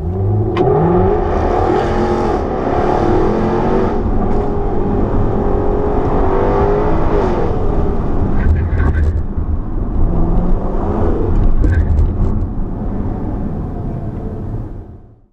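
Racing car engines revving and accelerating, their pitch sweeping up and down, loud throughout.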